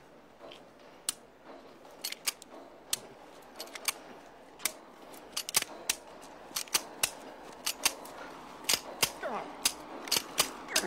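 A semi-automatic pistol failing to fire: a string of sharp metallic clicks as the trigger is pulled and the slide is worked, with no shot going off. The clicks come sparsely at first, then faster and closer together in the second half.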